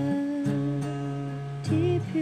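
A woman singing a long held note over a strummed acoustic guitar, with a new, higher sung note starting near the end.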